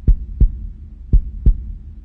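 Heartbeat sound effect: two double thumps, low and booming, each pair about a third of a second apart and repeating about once a second, over a steady low hum.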